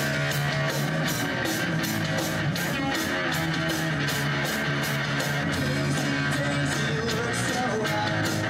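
A live rock band plays the opening of a song after a count-in: electric guitars strumming over a drum kit that keeps a steady beat, with no vocals yet.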